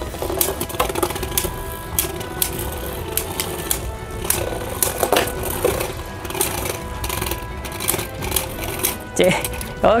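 Two Beyblade Burst spinning tops whirring and clattering around a stadium, with repeated sharp clicks as they knock against each other, while background music plays.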